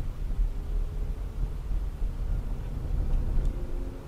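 Low, steady rumble of a car's engine and tyres heard from inside the cabin as the car pulls away from a standstill and picks up speed.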